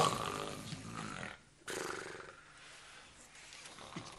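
An old woman snoring loudly in her sleep: two long, rasping breaths, the second fading away.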